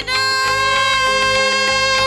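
Female Carnatic vocalist holding one long, steady note in raga Vasantha over a sustained drone, with light accompaniment.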